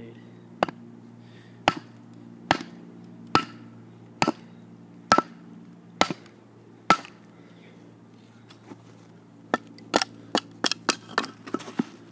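A wooden baton knocking on the spine of a Schrade SCHF1 fixed-blade knife, batoning it down through a board to split it. First comes a steady series of about eight knocks a little under a second apart, then a pause, then a quicker run of about ten knocks.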